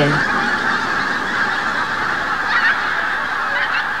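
A large flock of pink-footed geese in flight, many birds honking at once in a steady, dense din.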